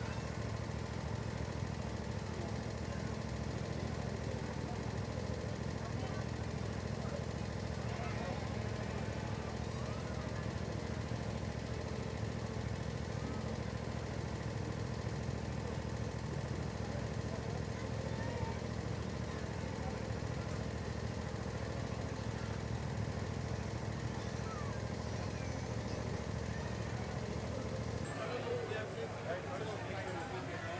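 Miniature train locomotive's engine idling steadily while the train stands on the track, with a faint murmur of voices over it.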